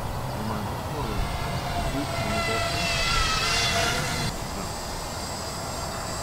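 Whine of the small electric motors of a radio-controlled FPV aircraft in flight, rising in pitch from about two seconds in and cutting off sharply about four seconds in. A steady low rumble of wind on the microphone underlies it.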